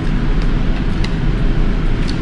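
A steady low rumble runs underneath, with a few light clicks of a metal fork in a paper noodle cup as the noodles are stirred and lifted.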